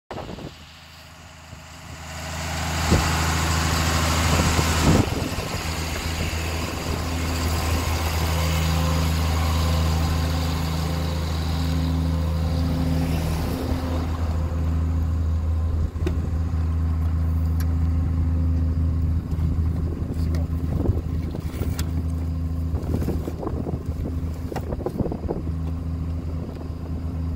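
A vehicle engine idling steadily close by, with a rush of noise over it in the first few seconds.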